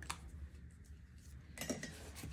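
Faint small clicks and taps of a pen and a paper card being handled on a wooden desk, a little busier near the end, over a low steady hum.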